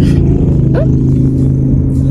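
Car engine running steadily, heard inside the cabin as a low, even hum, with a brief spoken "oh" partway through.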